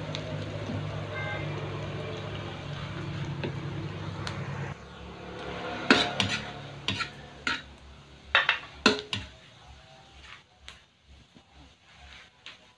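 A metal ladle stirs chopped aromatics frying in a steel wok, with a light sizzle. From about six seconds in come several sharp clanks of the ladle against the wok.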